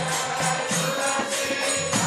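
Devotional mantra chanting (kirtan) with jingling hand percussion keeping a steady beat of about four strokes a second.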